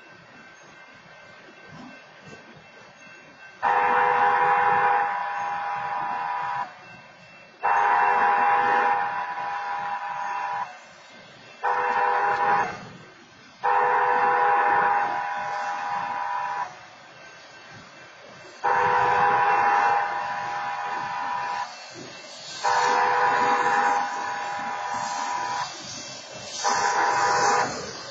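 Train horn sounding the grade-crossing signal, long, long, short, long, then starting the same pattern again. Before the horn there is a faint sound of railcars rolling past.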